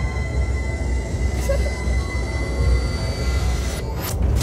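A low, steady rumble with a thin high ringing tone over it, from a cartoon soundtrack's sound design. A sudden loud bang cuts in right at the end.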